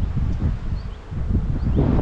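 Wind buffeting the microphone outdoors, with the faint hum of honey bees around an open hive.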